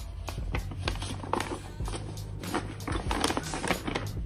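Soft background music with a steady low bass, under the crackle and rustle of a paper envelope being handled and opened.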